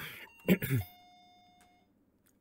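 A man coughs, and about half a second in a faint chime of several steady tones sounds together and rings for about a second before stopping.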